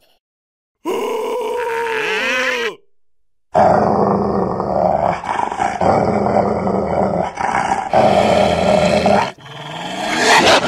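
A short cartoon vocal cry with wavering, falling pitch comes about a second in. Then a huge furry cartoon beast growls loudly and raggedly for about five seconds, in several long breaths.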